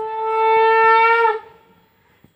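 A loud blown horn-like note, held steady for about a second and a half, dipping slightly in pitch as it dies away.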